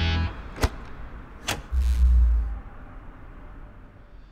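Music cuts off, then two sharp clicks about a second apart and a short low thump as the animatronic KitKat-finger switch snaps open and the billboard's power cuts out.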